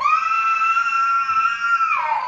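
Toddler's long, high-pitched wail held on one note, dropping away near the end: a protest cry at being kept in his chair for a timeout.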